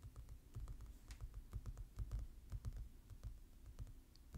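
Fingernails tapping on a glossy magazine cover: quick, light, irregular taps, several a second.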